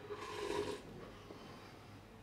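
Thick smoothie slurped straight from a plastic blender jug: one short, noisy sip lasting under a second.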